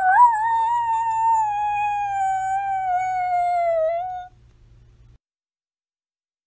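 A single long howl, "Aroooooo": it rises sharply, then holds and sinks slowly in pitch, and stops about four seconds in.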